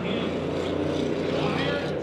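Several Bomber-class stock car engines running steadily as the field circles the short dirt oval just after the finish of the race.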